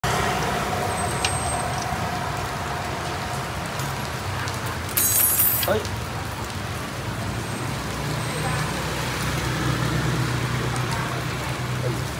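Street ambience on a rain-wet road: steady traffic noise with light rain, and a brief louder burst of noise about five seconds in.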